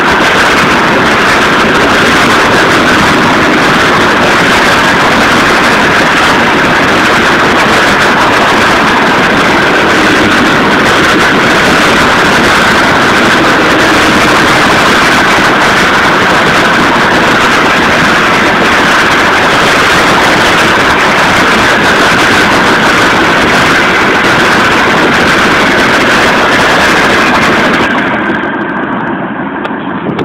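A passing freight train's wheels running on the rails: a loud, steady rolling noise with a high-pitched ring in it. Near the end it turns duller and quieter.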